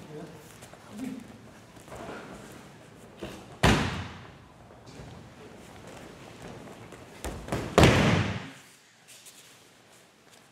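Two judo throws landing on the tatami, each a heavy thud of a body and breakfall slap hitting the mat, about four seconds apart.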